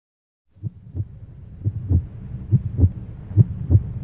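Heartbeat sound effect: low double thumps, lub-dub, repeating about once a second over a faint low hum, starting about half a second in.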